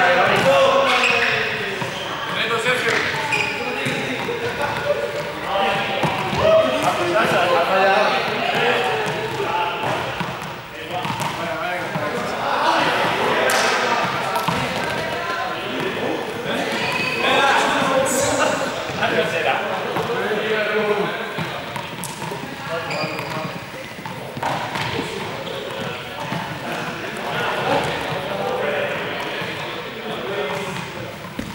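Many players' voices chattering and calling out across a large, echoing sports hall, with a ball bouncing now and then on the wooden floor in sharp knocks, most of them in the middle of the stretch.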